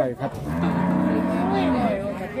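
A cow mooing: one long, low moo lasting about a second and a half, starting about half a second in.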